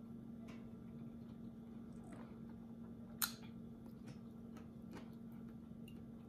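Faint closed-mouth chewing of food over a steady low hum, with scattered light clicks and one sharp click about three seconds in.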